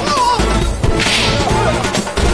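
Fight-scene sound effects: a sharp whooshing swish of a kick about a second in, over a music score.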